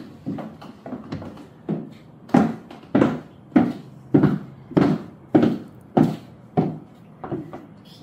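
Footsteps of six-inch black platform high-heel mules on a polished hardwood floor: a steady, regular clacking of heel and sole strikes, about three steps every two seconds, a little fainter near the end.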